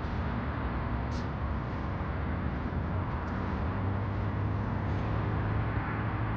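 A car engine running amid steady outdoor street noise, with a few faint short clicks.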